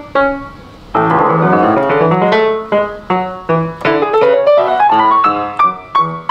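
Grand piano played solo with quick runs of notes. There is a brief lull just under a second in, then a rising run of notes toward the end.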